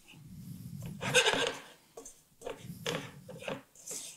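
Wooden spoon stirring and scraping sugar-coated almonds around a pan, the sugar coating gone crumbly as the candied almonds near the end of cooking. Irregular rasping strokes, the loudest about a second in.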